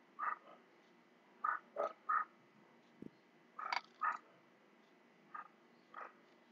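Faint short animal calls, about seven, spaced irregularly.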